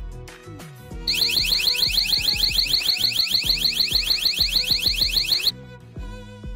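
Motion sensor alarm's electronic siren sounding for about four and a half seconds: a loud, rapid string of short rising sweeps that starts about a second in and cuts off suddenly, over background string music.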